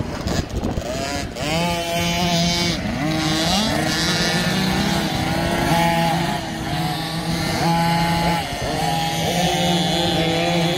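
Small two-stroke 50cc motocross bike engine, a KTM SX50, revving hard. Its pitch repeatedly rises and then holds at high revs for a second or so as the throttle is opened and held along the track.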